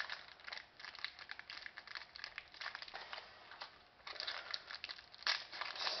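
Hockey trading cards being flipped through by hand: an irregular run of soft clicks and rustles as card slides against card, busier near the end.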